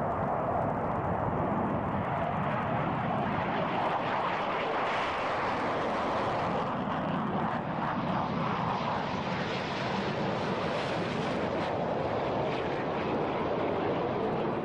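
Jet fighter's engine running at high power as the aircraft takes off and flies past, a steady, loud jet noise whose hiss grows brighter midway.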